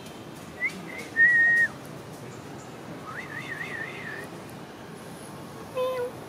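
Whistling: a brief short note, then a loud steady held note, then a warbling whistle that wavers up and down about five times. A cat gives a short meow just at the end.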